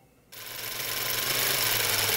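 Rapid mechanical clatter with a steady low hum, starting suddenly about a third of a second in: a running film projector used as a sound effect over a title card.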